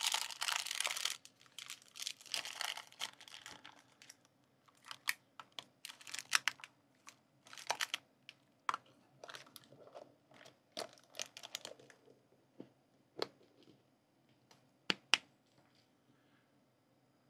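Plastic toy-capsule packaging being handled: wrapper film and paper crinkling in bursts over the first few seconds, then scattered light clicks and taps of hard plastic capsule halves being picked up and set down.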